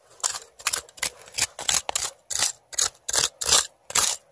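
A small hand tool scraping and picking packed dirt and gravel out of a bedrock crevice in short, quick strokes, about three or four a second, while crevicing for gold.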